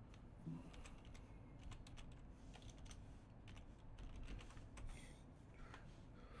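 Faint computer-keyboard typing: irregular quick key clicks.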